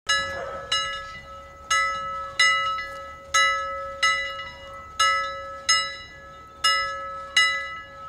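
A bell rung over and over, about ten strikes in pairs, each strike ringing on and fading before the next, over a steady ringing tone underneath.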